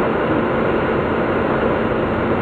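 Steady engine and running drone of a Volvo B9 Salf articulated bus with Caio Mondego LA body, heard from inside the passenger cabin.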